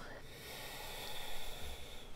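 A woman's long, quiet inhale through the nose: a steady breathy hiss lasting nearly the whole two seconds.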